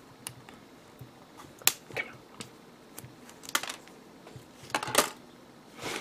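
Small hard-plastic model-kit parts being handled, with a scattering of sharp clicks and snaps as pieces are worked off the runner and pressed together. The loudest clicks come near the middle and near the end.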